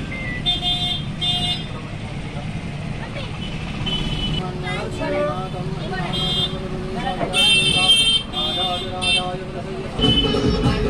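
A small puja hand bell rung in short bursts of several strokes each: two near the start and a cluster in the second half. Under it runs a steady murmur of crowd chatter.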